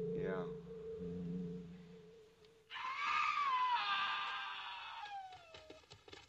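A steady hum for the first couple of seconds, then an abrupt, loud, high scream-like cry that wavers and slides slowly down in pitch over about three seconds before fading. Faint regular thuds begin near the end.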